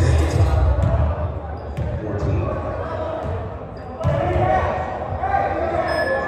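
Basketball bouncing on a gym's hardwood floor, a few separate bounces echoing around a large hall, with players' voices in the background.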